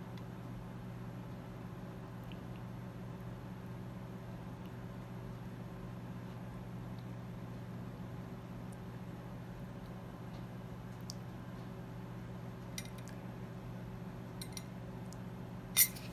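Quiet room tone: a steady low hum, with a few faint light clicks in the last few seconds.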